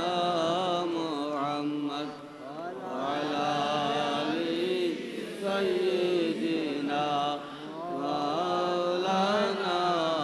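A man's voice chanting a melodic Islamic invocation in long, wavering held notes, with short breaks about two seconds in and again past the middle.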